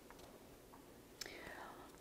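Near silence: room tone, with a faint click a little after a second in.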